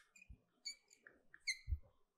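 Chalk on a blackboard: a few short, faint squeaks and soft taps as a word is written.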